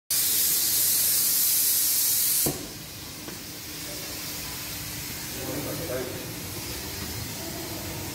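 Handheld coloured smoke sticks hissing loudly, cutting off abruptly about two and a half seconds in, followed by a softer continuing hiss.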